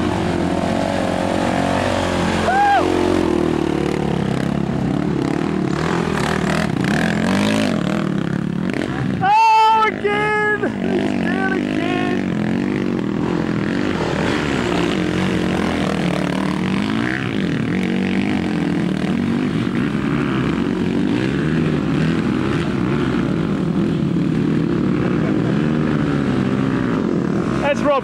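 Dirt bike engines revving and labouring under load on a muddy hill climb, the pitch rising and falling continuously as the throttle is worked. A brief loud shout comes about nine and a half seconds in.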